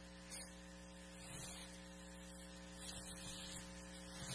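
Steady electrical mains hum, a low buzz with its row of overtones, carried by the microphone and sound system, with a few faint handling sounds near the microphone.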